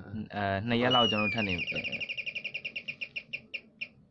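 A high-pitched chirping trill: a short falling whistle, then a rapid run of chirps that slows down and fades out near the end.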